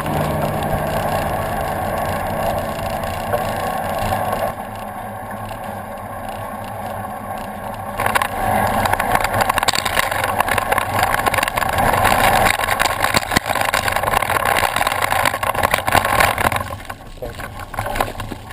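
Wind buffeting a bicycle-mounted camera's microphone, with tyre and road noise, as a road bike rides along. A car engine hums faintly in the first few seconds. About eight seconds in, the wind gets louder and more gusty.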